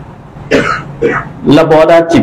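A man clears his throat twice into a close microphone, in two short rasping bursts about half a second apart, then starts speaking again.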